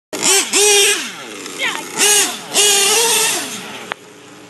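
Modified Picco Boost .28 nitro engine on an EFRA 2041 tuned pipe, in its first tanks of fuel, revving hard several times: a high whine climbs, holds briefly, then falls away as the throttle is let off. A sharp click near the end.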